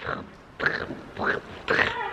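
A pony snorting and snuffling close to the microphone, three short breathy huffs.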